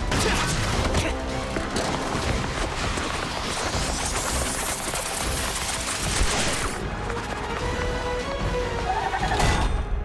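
Action-cartoon score with fight sound effects: repeated crashes and impacts over the music, and a long rising sweep through the middle.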